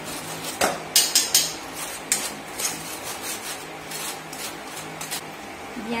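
A metal spoon scraping and clinking against a steel mesh sieve as flour is pushed through it into a bowl: a run of irregular scrapes and taps, the sharpest a little after a second in.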